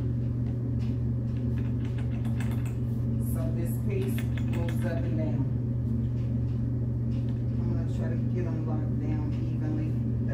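A steady low hum runs throughout, with faint voices and scattered light clicks and taps from a hand screwdriver turning a screw into a particleboard panel.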